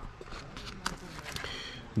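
Light handling noise: a few soft knocks and rubs as a resin-encased PEMF coil is picked up off a table.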